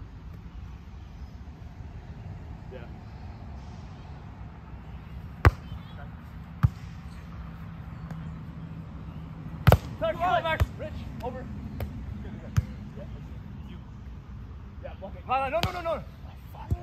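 Volleyball being hit during a beach volleyball rally: six sharp slaps of hands and arms on the ball spread over about seven seconds, the first and fourth the loudest. Players give short shouts just after the fourth hit and again near the end.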